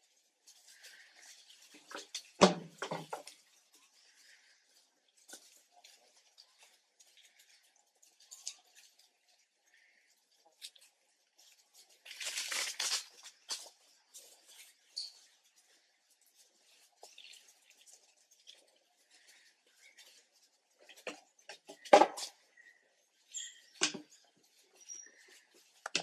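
Scattered rustling and crackling in dry leaf litter, with a few sharp knocks. The loudest knocks come about two and a half seconds in and again about twenty-two seconds in, and there is a longer rustle around the middle.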